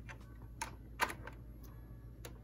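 Light clicks and taps of fingers handling a cutting mat and sticker sheet in a Silhouette Cameo 3 cutter, lining it up before the cut. About six short clicks in two seconds, the sharpest about a second in.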